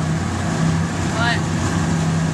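Motorboat engine running steadily underway, a constant low drone under a rush of wind and water.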